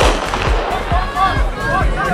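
A starter's pistol fires once, a sharp crack that starts a sprint race, with a short echo after it. Voices call out from about a second in, over background music with a steady beat.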